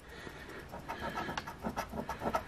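A coin scraping the scratch-off coating of a lottery ticket in quick back-and-forth rasping strokes, growing louder after the first half second. The coating is stiff and hard to scratch off.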